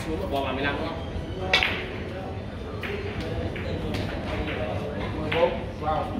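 Sharp clicks of carom billiard balls striking, one about a second and a half in and another near the end, over indistinct voices.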